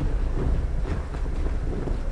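A steady low rumble, with a few faint soft thuds of bare feet stepping on the mat.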